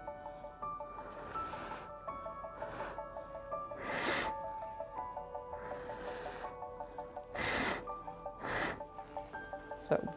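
Short breathy puffs of air blown by mouth onto wet acrylic paint on a canvas, pushing the paint across it; several blows, the strongest about four, seven and a half and eight and a half seconds in. Soft background music plays underneath.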